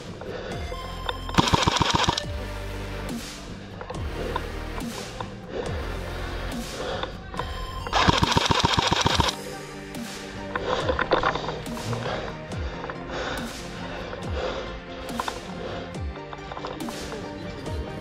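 Background music, broken twice by bursts of rapid full-auto airsoft rifle fire, each lasting about a second: the first about a second and a half in, the second about eight seconds in.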